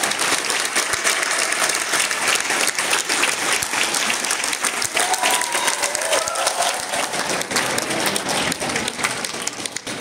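Audience applauding steadily during a curtain call, with a few faint voices rising over the clapping about five seconds in.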